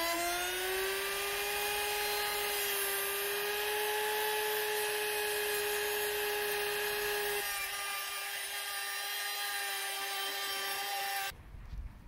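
Compact electric router finishing its spin-up with a rising whine, then running at a steady high pitch as its cutter routes a groove along the edge of a timber frame. The whine cuts off shortly before the end.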